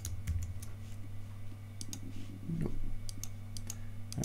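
Several scattered clicks of a computer mouse and keyboard as the software is worked, over a steady low hum.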